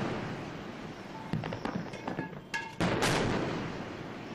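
Warship's turreted deck gun firing. The boom of a round fired just before dies away at first, then two heavy shots come about a third of a second apart, some three seconds in, each trailing off in a long rumble.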